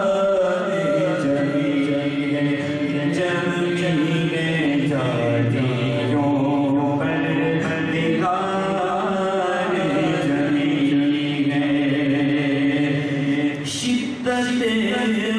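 Unaccompanied male voices chanting an Urdu naat over microphones. A lead voice moves over a group of men holding long steady notes beneath it, with no instruments.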